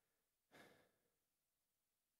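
Near silence, with one faint, short breath about half a second in.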